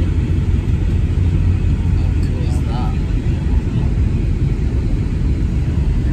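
Airliner cabin noise: the steady low rumble of the engines and airflow heard from inside the cabin in flight.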